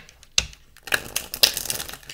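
A deck of oracle cards being shuffled by hand: one sharp snap about half a second in, then a quick run of card flicks and riffling through the second half.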